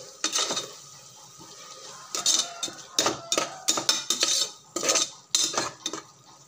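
A steel spoon scraping and clinking against the inside of a pressure cooker while stirring onion-tomato masala. The strokes are sparse for the first couple of seconds, then come thick and fast.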